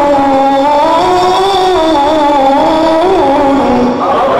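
A man's voice reciting the Quran in the melodic tajweed style, amplified through a microphone: one long held phrase without a break, its pitch wavering up and down in ornaments and sinking lower toward the end, where it stops.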